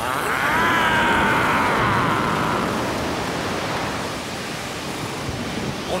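Cartoon sound effect of a flood of water rushing, a steady noisy rush. For the first two seconds or so a wavering pitched wail rides over it and then fades into the rush.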